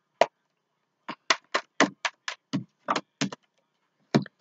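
Tarot cards being shuffled by hand: one slap of the cards, then after a short pause a run of about ten quick slaps, roughly four a second.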